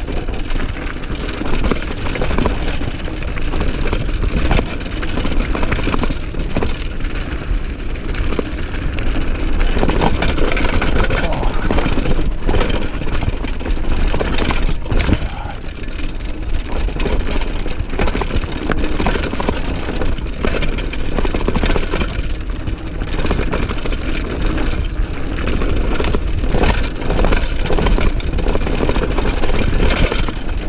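Mountain bike riding fast downhill on a dirt and rock trail: wind rushing over the microphone, with the tyres crunching over dirt and stones and irregular knocks and rattles as the bike hits bumps.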